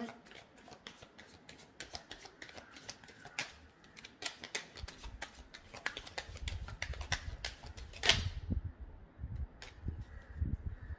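A tarot deck being shuffled by hand: many irregular, quick papery clicks of cards, with low bumps of handling in the second half and one sharper snap about two seconds before the end.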